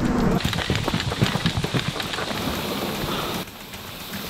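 Dense crunching and scuffing of footsteps and hands on loose, dry dirt, many small crackles close together. About three and a half seconds in it drops suddenly to a quieter outdoor hiss.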